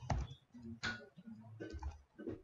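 Computer keyboard keys being typed: a few separate keystrokes.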